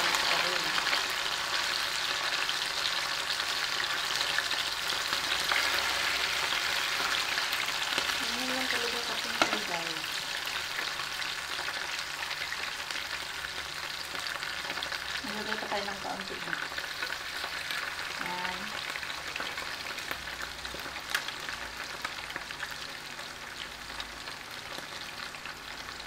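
Whole fish frying in hot oil in a pan, a steady crackling sizzle that slowly grows quieter, with one sharper pop about nine seconds in.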